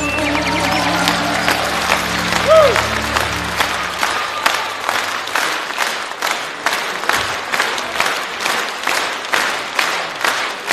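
Concert audience applauding as the song's last held notes die away about four seconds in; the applause then falls into rhythmic clapping in unison, about two claps a second.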